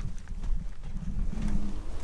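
Low rumble of a tank's engine with irregular light clanks and knocks.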